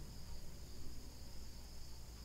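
Faint steady background noise: a constant high-pitched whine with a low hum underneath, the noise floor of the recording during a pause in speech.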